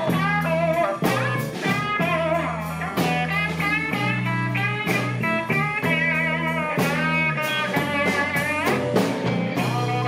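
Live blues band playing a shuffle-style groove on electric guitar, bass guitar and drum kit, with a lead line of bent, wavering notes over steady bass notes and regular drum hits.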